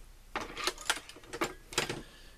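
Dillon 550C reloading press being cycled by its handle, a run of metallic clicks and clacks from the powder measure and its fail-safe rod. The measure works through its travel without jamming.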